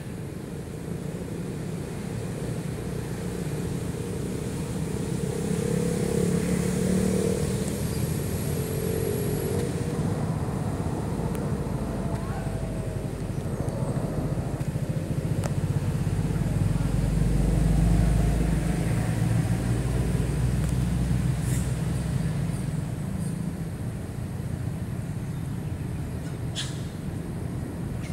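Low, steady engine rumble of a motor vehicle, building up to its loudest about two-thirds of the way through and then easing off, with a couple of faint clicks near the end.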